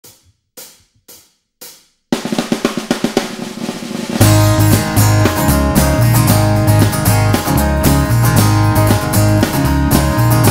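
Instrumental intro of a band-arranged Irish ballad: four clicks counting in, then a snare drum roll that swells for about two seconds before the full band comes in about four seconds in, with drum kit and a steady bass line.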